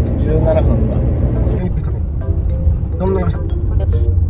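Steady low road and engine rumble inside the cabin of a moving Toyota HiAce van, under background music.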